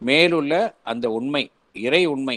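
Speech only: a man talking in three short phrases with brief pauses between them.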